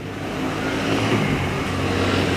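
A motor vehicle's engine running close by, growing louder over about the first second and then holding steady.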